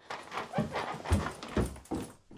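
A loud horror-film sound effect starts suddenly as a harsh, noisy rush, with heavy low thuds about a second in and again near the end, and then cuts off.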